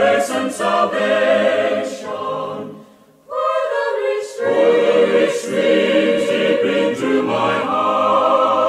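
A choir singing a hymn unaccompanied, with a short pause about three seconds in before the next phrase begins.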